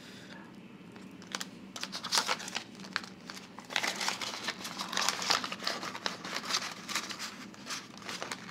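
Paper banknotes and a clear plastic binder envelope rustling and crinkling as cash is handled and slipped into the envelope. It is faint at first, then turns into a busy run of crackles and small clicks from about two seconds in.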